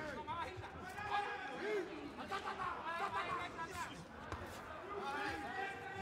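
Faint voices of people calling out and chattering, echoing in a large hall, with a few soft thuds.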